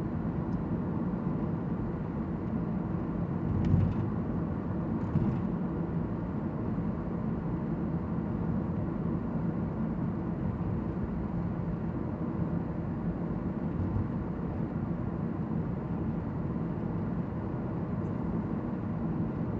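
Steady road and tyre noise inside a Toyota Prius V cabin cruising at about 42 mph, with two brief thumps a little after three and five seconds in.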